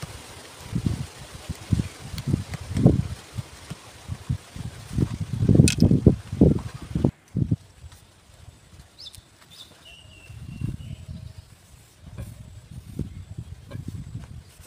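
Irregular dull thuds of a small hatchet tapping a bamboo stake into dry soil, for about the first seven seconds. After that it goes quieter, with a few faint bird chirps.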